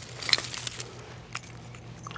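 Hand digging in loose soil and roots, with a few small clinks and scrapes of glass as a buried bottle is worked free, mostly in the first second.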